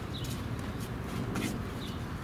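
Outdoor ambience: a small bird chirps a couple of times, with a few short crackling scuffs and a steady low rumble underneath.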